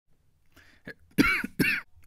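A man clearing his throat with two short, loud coughs in quick succession, about a second in.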